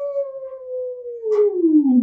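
A woman's voice holding one long drawn-out vowel while speaking, its pitch sliding slowly downward.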